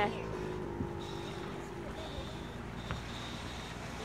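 Steady low hum of a motorboat engine running, with a faint steady high tone above it and two light knocks, about a second and three seconds in.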